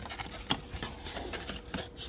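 Cardboard trading-card box being handled with its top flap open: light rustling and scraping of cardboard, with a small tap about half a second in.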